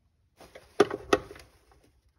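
Artificial flowers being handled and set among glass canisters on a counter: a brief rustle with two sharp knocks about a third of a second apart near the middle.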